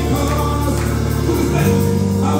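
Live gospel music: electronic keyboard playing sustained bass chords under group singing. The chord changes about 1.7 seconds in.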